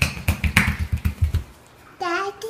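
A toddler's bare feet slapping quickly on a tile floor as he runs, a fast even patter that stops about one and a half seconds in.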